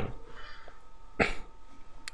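A single short cough from a person, about a second into a quiet pause.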